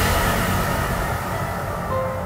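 Hardcore electronic dance track in a breakdown: a noise swell fades away over a low synth rumble as the heavy section dies down. A clean synth note comes in near the end.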